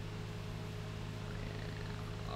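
Steady low electrical hum with a faint hiss underneath, and no other sound.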